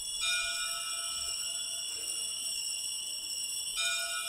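Altar bells ringing at the elevation of the consecrated chalice: bright, sustained ringing tones, struck just after the start and again near the end.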